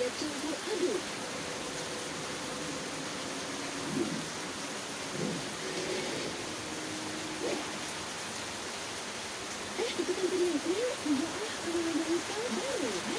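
Television broadcast audio played through a loudspeaker, faint and muffled under a steady hiss. Brief voice-like sounds come through near the start and in the middle, and grow livelier from about ten seconds in.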